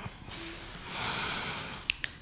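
A man drawing a breath in through the mouth close to the microphone, a soft hiss lasting under a second, followed by a short mouth click just before he speaks again.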